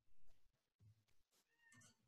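Near silence, with a faint short pitched sound near the end.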